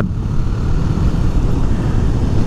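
Steady low rumble of wind and road noise on the microphone while riding a 2018 KTM Duke 390. The stock exhaust of its single-cylinder engine is barely heard.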